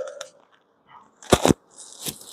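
Two quick sharp clicks in close succession, about a second and a half in, in an otherwise quiet pause.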